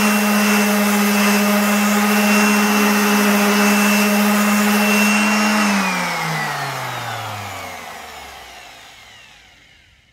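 Erbauer ERO400 400 W random orbital sander on full speed with a 60-grit disc, giving a steady motor hum and sanding hiss against painted wood. A little past halfway it is switched off, and its pitch falls and fades as it winds down.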